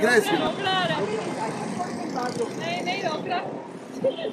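A man speaking Urdu in short phrases, over steady background noise.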